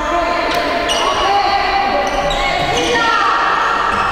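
Handball bouncing on the sports hall floor during play, with voices and several held high-pitched sounds echoing in the hall, one falling in pitch near the end.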